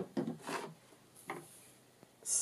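A sharp plastic click right at the start as a clear-stamp set's case is snapped shut. A few light knocks and rubs follow as small craft items, including a clear acrylic stamp block, are handled on the table.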